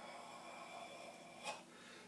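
Faint, slow controlled exhale through a karate kata tension movement, with a brief sharp breath sound about one and a half seconds in.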